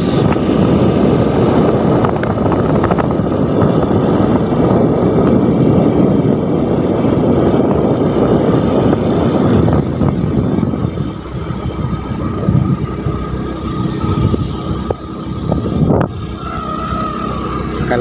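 Travel noise from a moving road vehicle: engine, tyres and wind rushing over the microphone. It is loud for about the first ten seconds, then eases off somewhat.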